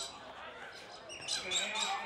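Voices calling out during a junior Australian rules football contest, joined about a second in by a quick run of short sharp knocks, four or five a second.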